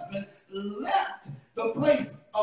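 A man preaching into a microphone in short phrases broken by brief pauses.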